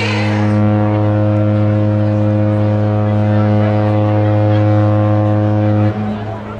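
Cruise ship's horn sounding one long, steady, deep blast that stops abruptly near the end.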